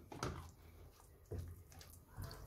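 Faint wet stirring of a thick pepper-and-eggplant spread with a spatula in a nonstick frying pan, two short squelches about a second apart.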